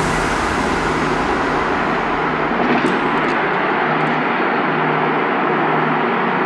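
Steady tyre and engine noise heard inside a car's cabin at highway speed, with a low hum underneath. The hiss grows duller after about two seconds.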